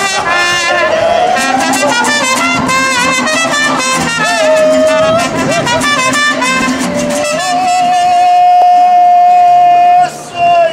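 Mariachi band playing, trumpets over strummed guitars. A long held high note begins about seven and a half seconds in and is the loudest part.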